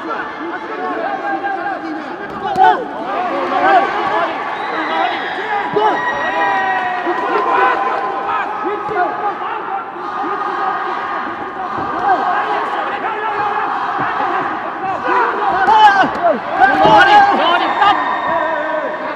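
Arena crowd shouting and cheering at a boxing bout, many voices overlapping, with a couple of sharp smacks about two and a half and four seconds in. The shouting rises to its loudest near the end.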